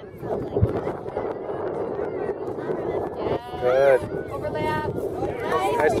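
A high, wavering shout rings out about three and a half seconds in, followed by another short call, over a steady murmur of sideline voices.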